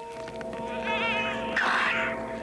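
A cat's yowl from a film soundtrack: a wavering call about a second in, then a louder, harsh screech near the end. Sustained tones of the film score are held underneath.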